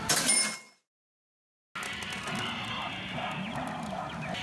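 Pachinko machine sound effects: a loud ringing chime right at the start that dies away within a second, then a gap of dead silence under a second long, after which the machine's music and effects carry on steadily.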